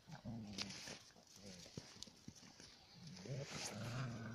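Puppies growling low in play, one growl near the start and a longer one near the end, with a few short scuffing clicks between.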